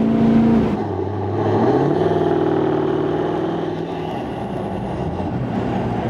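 Ford Super Duty pickup's diesel engine revving hard under full throttle to roll coal: its pitch climbs, breaks about a second in, climbs again, then holds and slowly eases off.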